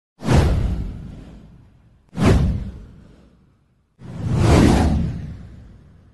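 Three whoosh sound effects of an animated intro title. Each sweeps in and fades away over about a second and a half. The first two start sharply, about two seconds apart, and the third builds in more gradually.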